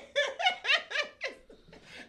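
A person laughing in a string of short bursts that fall in pitch, about five a second, trailing off after a little over a second.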